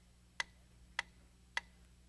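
Wooden pyramid-shaped mechanical metronome ticking three times, evenly spaced a little over half a second apart, setting the tempo as a count-in just before the song starts.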